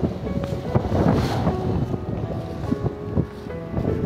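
Wind noise on the microphone and the rustle of a large armful of leafy greens being carried and dropped into a cart, over background music.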